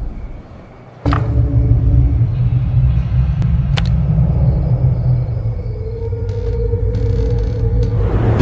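Trailer sound design: a sharp hit about a second in sets off a deep, steady rumbling drone, with another sharp click near four seconds and faint held musical tones over it, one tone growing steadier near the end.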